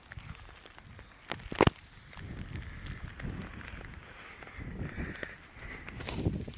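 Gusty wind buffeting the microphone in an irregular low rumble, with two sharp knocks about a second and a half in, the second the loudest.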